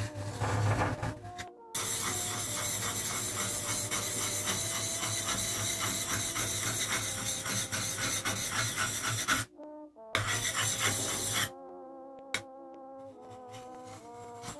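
A steel part of a hand plane rubbed back and forth on a whetstone: a rasping scrape in quick, even strokes, broken by a short pause about nine seconds in and stopping a couple of seconds before the end. Old big-band music plays faintly underneath.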